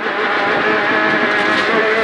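Peugeot 208 R2 rally car's four-cylinder engine running under load at a steady pitch, heard from inside the cabin over tyre and road noise.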